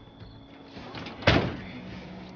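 A car door slammed shut once, heard from inside the car, a little over a second in.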